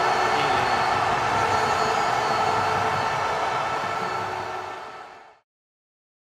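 Logo-animation sound effect: a loud, sustained rushing noise with a few steady tones through it. It fades and then cuts off about five and a half seconds in.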